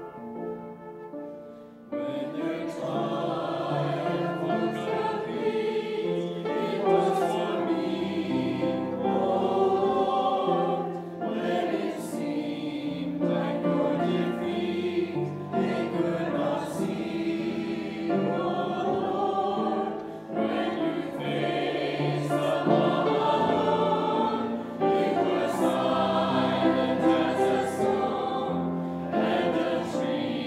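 Mixed church choir of men's and women's voices singing a hymn in harmony with piano accompaniment, the full choir coming in about two seconds in after a brief quiet.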